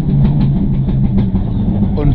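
Mitsubishi Lancer Evo IX rally car's turbocharged four-cylinder engine, heard loud from inside the car as it is driven at racing pace around a corner on a special stage, the engine note fairly steady, with short clicks and knocks from the car over it.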